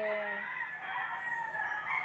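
A rooster crowing: one long drawn-out call lasting most of two seconds.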